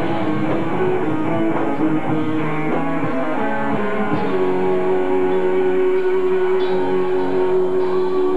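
Live metal band playing, electric guitars to the fore with drums, recorded on a camcorder from the crowd. About halfway through, a chord is held and rings on steadily.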